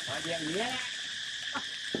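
Steady, high-pitched insect drone.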